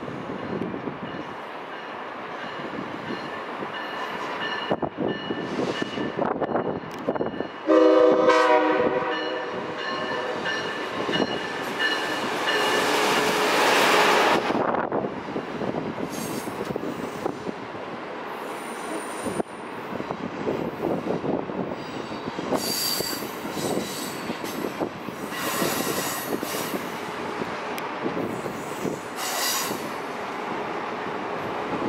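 Amtrak Acela Express train rounding a curve with high-pitched wheel squeal, sounding one short horn blast about eight seconds in, the loudest sound, then rumbling past. Later a second train's wheels squeal in short high bursts on the curved track.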